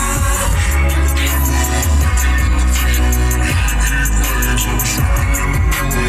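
A song with heavy bass and a steady beat playing on a car stereo inside the cabin.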